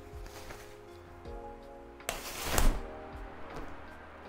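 A 10-rib folding umbrella being opened: a short rush of canopy and frame noise about two seconds in, lasting under a second, over faint background music.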